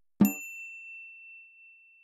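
A single bright bell-like ding is struck about a quarter second in. One high ringing tone then fades away over about two seconds.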